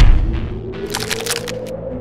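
Film-score sound design: a heavy low boom hits at the start, then a slowly rising tone runs under the music, with a short burst of sharp crackling about a second in.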